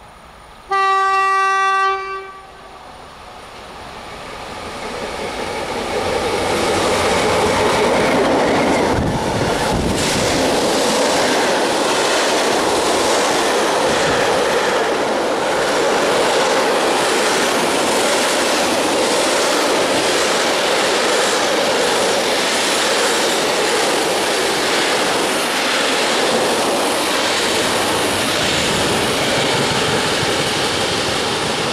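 An EU07 electric locomotive sounds one horn blast, a single steady note about a second and a half long. Its container freight train then comes on, growing louder over a few seconds, with a low thud as the locomotive passes about nine seconds in, and the wagons then roll by with a steady, loud clatter of wheels over the rail joints.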